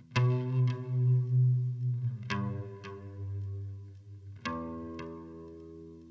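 Guitar with a chorus effect playing a slow phrase of five plucked notes or chords in two pairs and a single, each left to ring and fade over a deep sustained low note.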